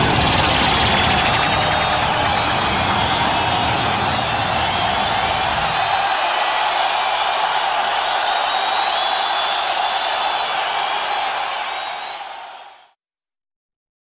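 Closing seconds of a Eurobeat dance track: a dense, noisy synth wash with faint held tones. The bass drops out about six seconds in, and the sound fades out about a second before the end.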